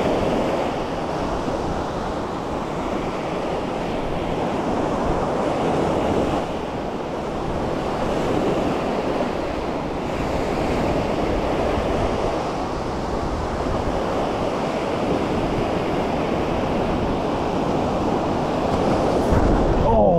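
Ocean surf breaking and washing up a sandy beach, a steady rushing wash that swells and eases slowly.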